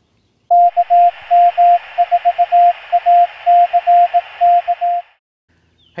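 Morse code keyed as a steady single-pitched CW tone over radio band hiss, in short dots and longer dashes. The keying reads as the callsign KM4ACK. Tone and hiss cut off together suddenly near the end.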